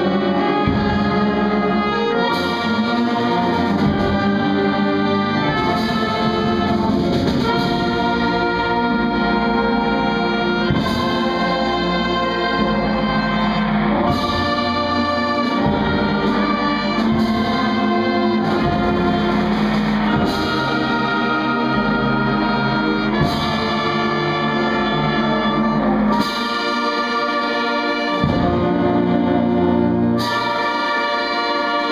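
A school concert band of brass and woodwinds (trumpets, saxophones, flutes, clarinets, low brass) playing a piece live, with sharp accented entries every few seconds.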